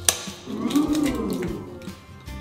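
An eggshell cracked with one sharp crack against the rim of a pot, followed by a drawn-out tone that rises and then falls in pitch.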